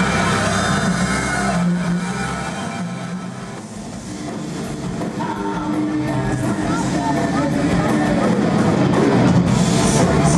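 Live heavy metal band with electric guitars and a drum kit playing. The sound thins out to its quietest about four seconds in, then builds back up, with sharp cymbal-like strikes near the end.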